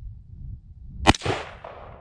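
A single shot from a 5.56 mm AR-15 rifle about a second in: a sharp crack followed by a short trailing echo.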